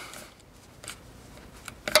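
Hand screwdriver turning a screw that fastens a metal strap-lock button into the wooden end of an electric guitar body. It goes quietly, with a few small clicks about a second in and near the end.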